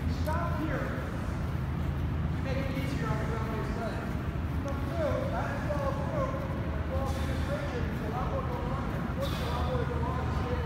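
Indistinct talking over a steady low hum.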